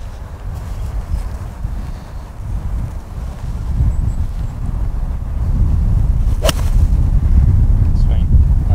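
A golf iron striking a ball off the tee: one sharp crack about six and a half seconds in. Wind rumbles on the microphone throughout, louder in the second half.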